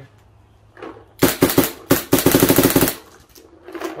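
Autococker paintball marker with a select-fire electronic frame firing a rapid string, about a second in: a few quick shots, a brief break, then a fast even burst of roughly fifteen shots a second. The rate climbing is typical of ramp mode, which the owner thinks the frame is set to.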